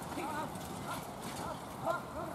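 Hoofbeats of a single horse trotting on grass and dirt, with an announcer's voice in the background.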